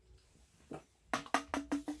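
Beer glugging out of an aluminium can into a glass as it is poured: a quick run of about six hollow, pitched glugs starting about a second in.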